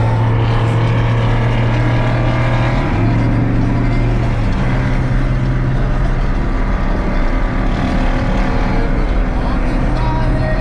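Engine and road noise heard from inside a truck's cab cruising on a highway: a loud, steady low drone that shifts pitch briefly about three seconds in and settles again a second and a half later.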